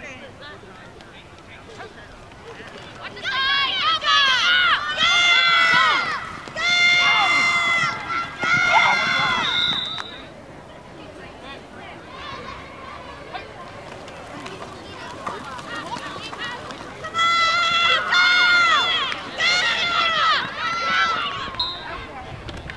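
Young, high-pitched voices shouting on a youth football sideline, in two loud bouts: one a few seconds in and another near the end. Quieter outdoor background noise lies between the bouts.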